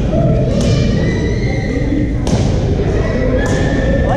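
Badminton rally: three sharp racket-on-shuttlecock hits about a second apart, with a long squeak between them, over echoing chatter from players on neighbouring courts in a large gym.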